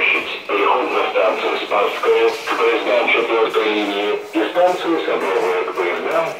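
A voice announcement over a metro car's public-address loudspeakers, tinny and cut off in the highs.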